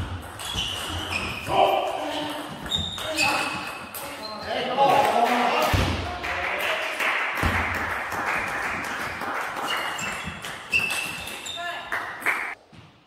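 Table tennis rally: the ball clicks back and forth off the bats and the table in a run of quick, sharp knocks, in a large echoing hall.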